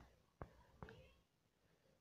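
Near silence: room tone, with three faint short clicks in the first second.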